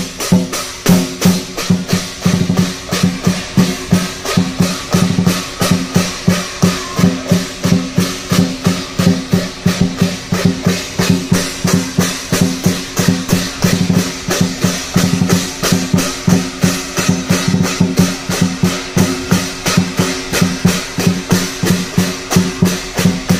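Lion dance percussion: a large lion drum beaten in a steady driving rhythm of about three strokes a second, with clashing cymbals over it.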